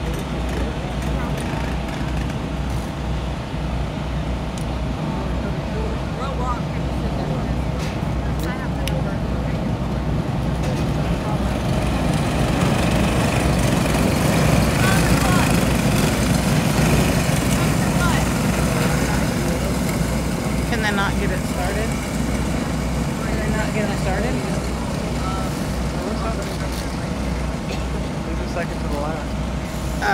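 Engines of a pack of racing go-karts running on a dirt oval, swelling as the pack passes in the middle and fading after.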